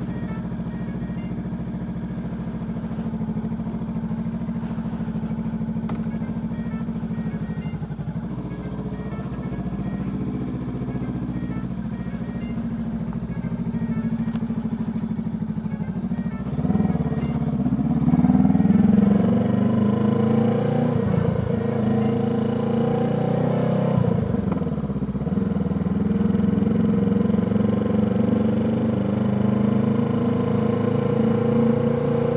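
Honda Rebel 500's parallel-twin engine idling steadily in neutral, then pulling away a little past halfway through. The pitch rises as it accelerates, dips as the throttle closes and it shifts up, and climbs again.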